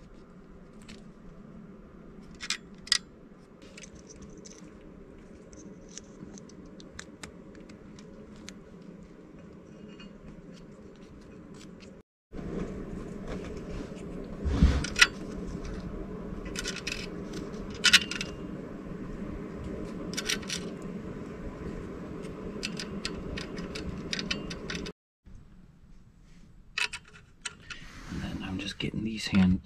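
Scattered small clicks and light metallic rattles of crimp connectors and wires being handled and pushed onto the terminals at the back of gauges, over a steady low hum. The sound drops out briefly twice, about 12 and 25 seconds in.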